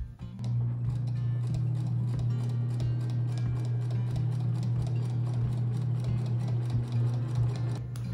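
Electric sewing machine stitching through thick quilted fabric: the motor starts about half a second in and runs steadily, with rapid, evenly spaced needle strokes. Background music plays underneath.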